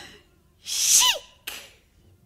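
Female singer's breathy vocal exclamation with a falling pitch, followed by a short breathy puff, as a comic vocal effect in a show tune.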